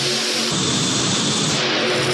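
Multi-engine modified pulling tractor running at full power as it hauls a weighted sledge, a loud, steady engine noise with no let-up.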